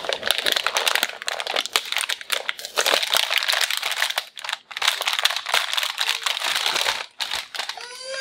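Thin clear plastic wrapping crinkling as it is pulled off a plastic toy gun: a dense, crackling rustle with short pauses about four and seven seconds in.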